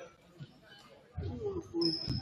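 Indistinct voices of players and spectators in a gym, starting after a quiet first second. Near the end comes a short high squeak, like basketball sneakers on a hardwood court.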